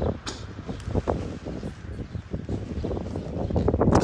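Wind rumbling on a handheld phone's microphone, with irregular knocks and rustles from the phone being handled and moved.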